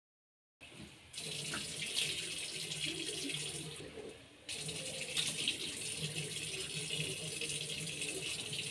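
Tap water running into a sink, splashing onto cupped hands as they scoop water to rinse. It starts about a second in and drops away briefly around the middle before running on.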